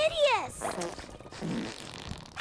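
Comic cartoon fart-like sound effects from the bubbling stink pits: a short pitched squeal that rises and falls at the start, then low blurting pops.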